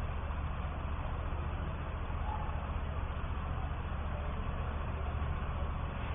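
Steady background noise: a low, even hum under a constant hiss, with no distinct events.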